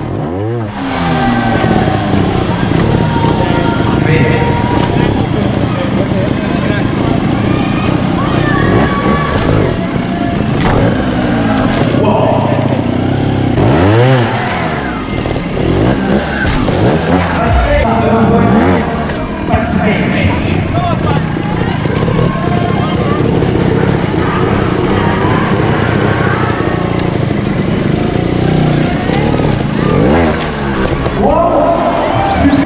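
Sherco trials motorcycle engine blipped in short revs that rise and fall sharply, a few times, as the bike is hopped onto concrete obstacles. Under it, amplified arena talk and music run throughout.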